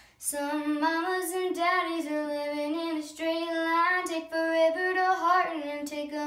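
A young girl singing unaccompanied, a held melody line with pitch slides and runs between notes. It begins just after a brief pause at the very start.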